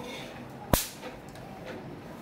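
Electric mosquito racket giving a single sharp zap a little under a second in.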